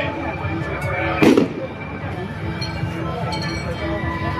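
One sharp firecracker bang a little over a second in, over the chatter of many voices.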